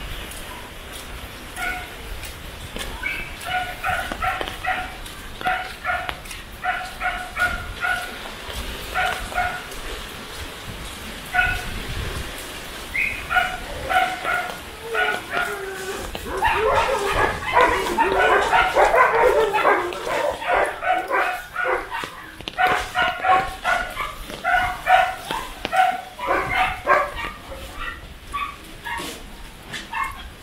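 A dog barking repeatedly in short, high yaps, in bursts of several barks, starting about two seconds in, with a denser, louder flurry of barking around the middle.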